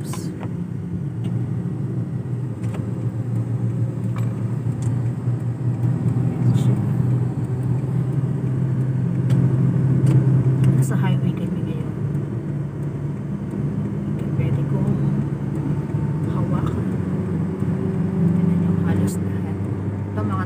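Steady low drone of a car's engine and tyres heard from inside the cabin while driving along a highway.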